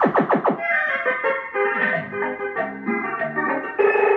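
Electronic caller tune ("llamador de entrada" number 4) from a CB radio's caller box: a few quick falling pitch sweeps, then a melody of short stepped electronic tones.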